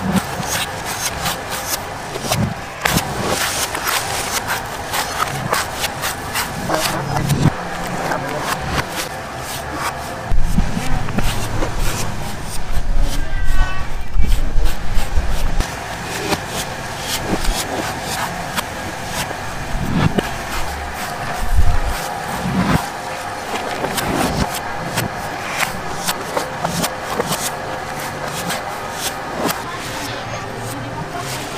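Large knife blades hacking and shaving the husks of green young coconuts against wooden chopping blocks: a run of sharp chops and knocks over background chatter. A louder low rumble comes in about ten seconds in and stops some five seconds later.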